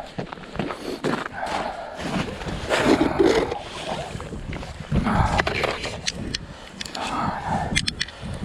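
A man's excited wordless shouts and exclamations, in short outbursts every second or so, with a few sharp clicks near the end.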